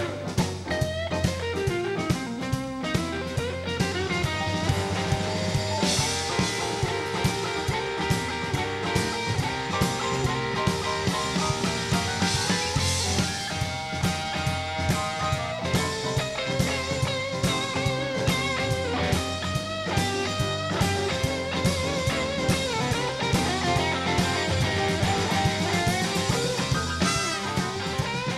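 Live blues-rock band playing an instrumental passage: electric guitars, bass guitar and a drum kit keeping a steady beat, with bending guitar lines over the top.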